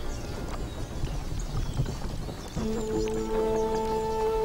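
Horses' hooves clopping on a dirt road, with music of long held notes coming in about two and a half seconds in.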